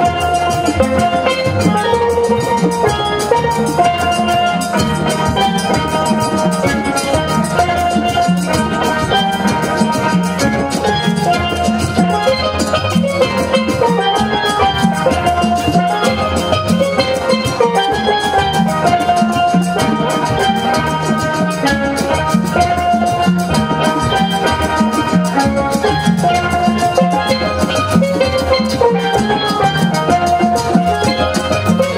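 Steel drum ensemble playing a piece together: steel pans carry the melody and chords over a steady drum beat.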